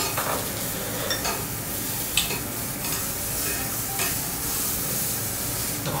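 Meat sizzling steadily on a tabletop yakiniku grill, with a few faint clicks.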